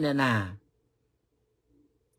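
A man's voice trailing off at the end of a phrase, its pitch falling, for about half a second; then near silence.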